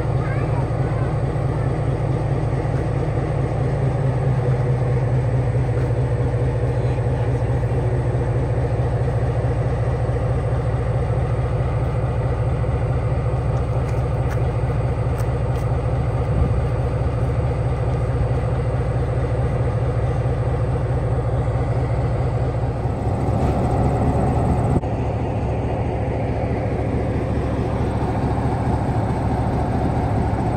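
Diesel locomotive engine running steadily at close range, a loud low drone with an even pulse, shifting slightly about three-quarters of the way through.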